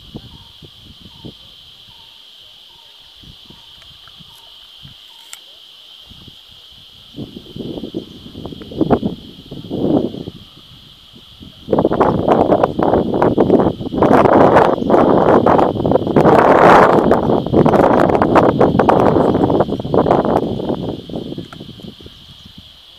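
Wind buffeting the camera microphone in gusts: two short gusts about a third of the way in, then a long, loud one through most of the second half. Under it a steady, high-pitched insect drone runs throughout.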